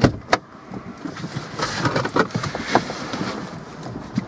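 Handling and movement noise inside a parked car: a sharp click right at the start and another a moment later, then a stretch of rustling and knocks.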